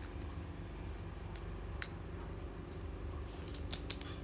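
A few light clicks of scissors being handled, a cluster of them near the end, over a low steady background hum.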